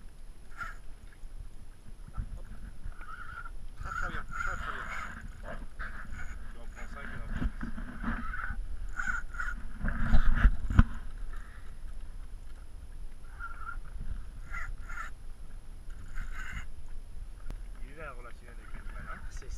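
A spinning reel whirring in short runs as line is wound back in on a hooked bluefin tuna, over a steady rumble of wind on the microphone. There is a louder buffeting surge about ten seconds in.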